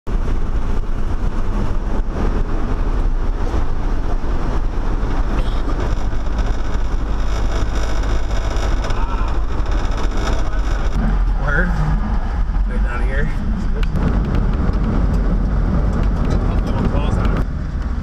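Steady road noise inside the cabin of the Dominator 4 armored storm-chasing vehicle as it drives along a highway: a low engine hum under tyre and wind noise. Faint voices can be heard about eleven to thirteen seconds in.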